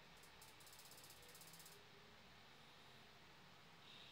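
Near silence, with a faint rapid scratchy ticking for about the first two seconds as a glue stick is rubbed along a satin fabric strip.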